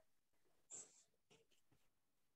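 Near silence on a video-call audio line, with one faint short hiss less than a second in.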